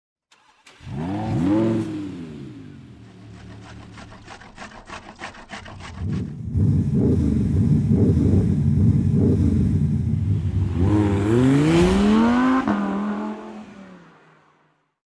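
Car engine sound effect: a rev that rises and falls about a second in, then a quieter idle with rapid even ticking, a long loud run, and a rising rev near the end that levels off and fades out.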